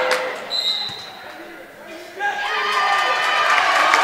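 A sharp smack at the start, then a referee's whistle blown once briefly. About two seconds in, the gym crowd starts shouting and cheering, building louder toward the end.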